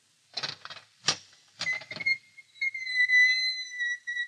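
Radio-drama sound effect of a cell door opening: a rattle of clicks from a latch or lock, then a long, steady, high hinge squeal that begins about a second and a half in.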